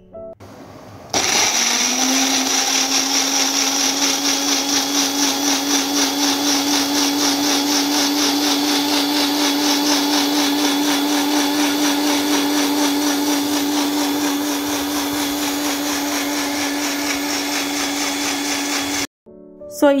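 Kajafa 400-watt bullet-style juicer-mixer blending tomato pieces into juice. The motor starts about a second in, spins up to a steady whine, runs evenly and cuts off suddenly just before the end.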